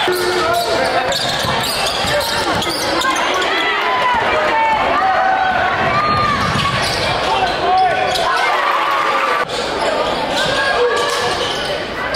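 Basketball being dribbled on a hardwood gym court during play, under a constant din of voices and shouts from players and spectators, echoing in a large gym.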